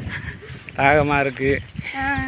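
Wind buffeting the microphone in gusty rumbles, with one short voiced call about a second in.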